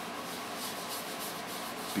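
A cloth rag rubbing Tru-Oil finish into the bloodwood headstock overlay of an acoustic guitar, a soft swishing in short repeated strokes, as a coat of oil is laid on.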